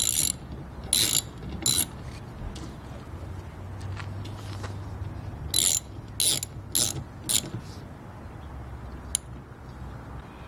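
Socket ratchet with a 12 mm deep socket tightening the nut of a rear wiper arm. Its pawl clicks in short runs on each back-swing: three in the first two seconds, four more in quick succession midway, and one brief one near the end.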